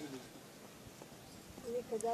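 A quiet pause with only faint background hiss, then a man's voice starting again briefly near the end.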